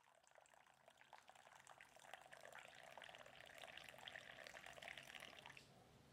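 Coffee poured in a thin stream into a mug, faint, growing a little louder as the mug fills and stopping abruptly shortly before the end.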